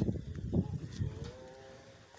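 A faint, low engine hum that rises slightly in pitch in the second half, over low outdoor rumble.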